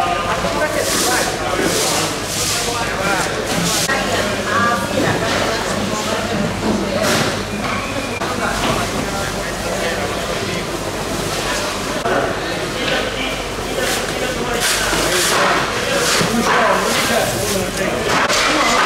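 Busy fish-market crowd: many overlapping voices of vendors and shoppers talking at once, with a few short noisy bursts through the chatter.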